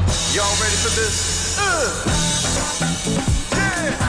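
Upbeat band music: a drum kit beat under electric guitar and bass, with a few sliding, swooping notes over it.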